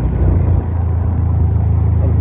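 Motor scooter engine running with a steady low hum, with road and wind noise from riding.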